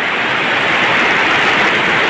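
Torrential rain falling, a steady loud hiss.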